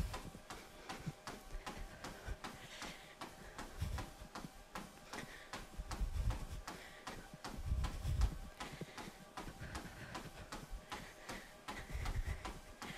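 Running footfalls on a treadmill belt: faint, even thuds at about three steps a second, a steady running cadence.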